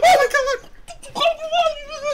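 A man's high-pitched falsetto squealing in mock fan excitement: one shriek at the start and a second, longer one about a second in.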